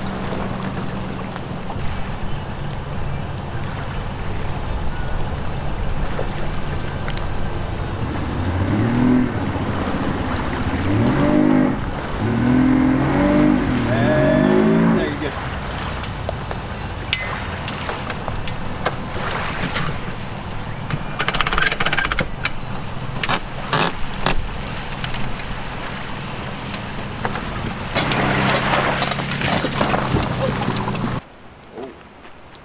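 A vehicle engine idles steadily. About eight seconds in, an outboard motor revs up several times in rising surges as the boat is driven onto its submerged trailer. After that come scattered clanks and knocks from the trailer and hull, and the steady engine note returns near the end.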